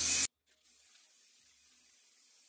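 Aerosol spray paint can sprayed in a short, loud hissing burst that cuts off suddenly, then a faint steady hiss.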